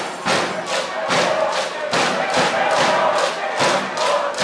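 A baseball cheering section chanting and shouting in unison to a steady drum beat, about two to three beats a second.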